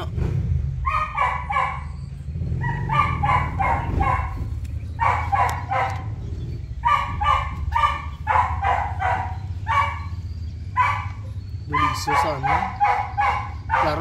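A dog barking repeatedly in quick runs of three or four short barks, over a steady low hum.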